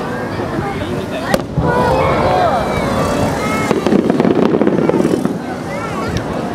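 A firework shell bursts with a single sharp bang about a second and a half in, over the steady chatter of a crowd of onlookers. From about four seconds in comes a rapid patter of short pops for a second or so.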